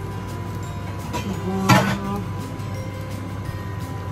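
A steady background of music, with one short, loud clink about two seconds in, as a metal spoon knocks against the cookware while seasoning is added.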